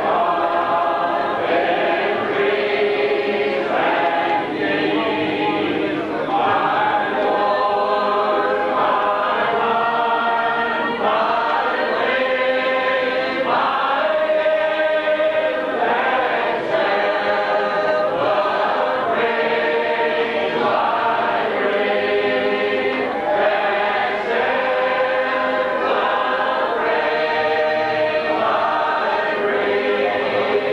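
A congregation singing a hymn a cappella, many voices together in slow, long-held notes that change every second or two.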